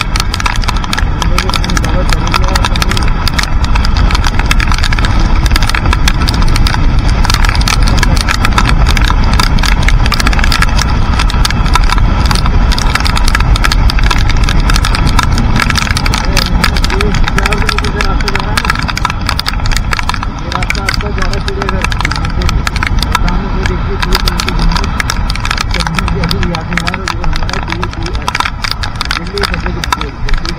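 Motorcycle riding in heavy rain: wind buffeting a bike-mounted microphone, rain striking it, and engine and wet-road tyre noise beneath. It eases a little about halfway through.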